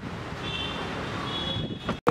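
Street traffic noise, with two short high beeps, each about half a second long and about a second apart.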